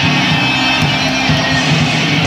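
A rock band playing live, with electric guitar to the fore over bass and drums, loud and without a break.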